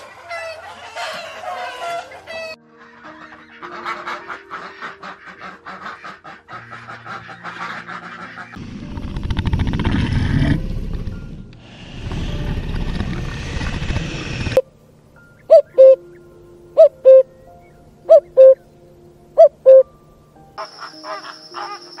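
Soft background music under a run of animal sounds. It opens with chickens clucking, and a loud rushing noise fills the middle. From about two thirds of the way in comes a series of very loud short calls, mostly in pairs, and flamingo flock chatter starts near the end.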